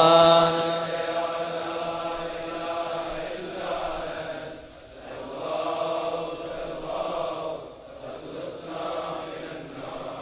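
A congregation of men chanting the closing refrain of a supplication together in unison. It opens on a loud held note, and the blended voices then run on more softly in phrases that swell and fade.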